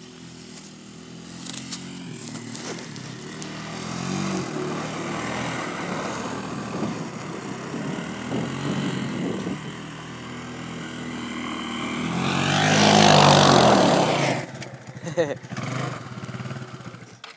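Kawasaki Bayou 250 ATV's single-cylinder four-stroke engine running as the quad is ridden through snow toward the microphone. It grows steadily louder and is loudest near the end as it comes close, with a rush of noise at the peak, then drops off.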